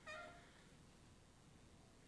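Near silence: room tone in a pause in speech, with a brief faint pitched sound in the first half second.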